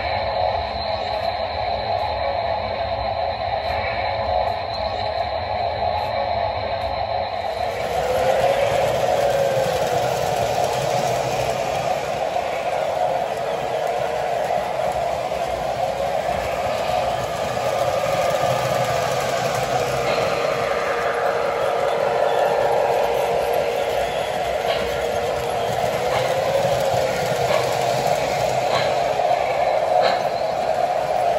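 Model train under power: the MTH O-gauge Milwaukee Road Hudson locomotive's Proto-Sound 3.0 steam sound system, with the running noise of the model on the track. It plays a steady sound at first, and about seven seconds in it turns fuller and hissier as the locomotive gets under way, staying so while it runs.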